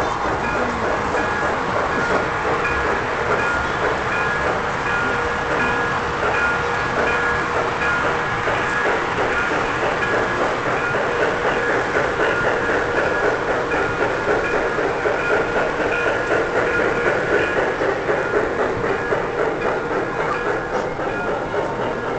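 MTH O-gauge model steam locomotive running along a layout, its wheels rolling over the three-rail track with its onboard steam sound effects, over a steady hall din with a few held tones.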